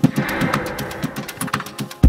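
Electronic dub-techno instrumental: a rapidly pulsing low synth bass under fast ticking hi-hats, with a hissing noise swell in the first half.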